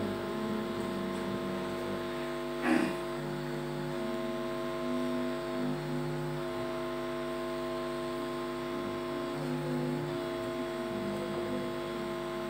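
Steady electrical hum made of several fixed tones from a microphone and loudspeaker system, with one brief soft noise about three seconds in.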